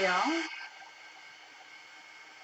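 Handheld craft heat tool running, its fan blowing a steady hiss of air with a faint whine in it, drying wet watercolor paint on a card.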